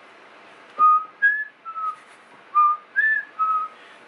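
A person whistling a short tune: two matching three-note phrases, each going low, high, then back to the middle, the second starting about a second and a half after the first.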